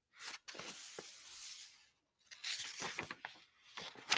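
Rustling and handling of a paper picture book as it is moved and lowered, in two stretches of about a second and a half each, with a few soft knocks.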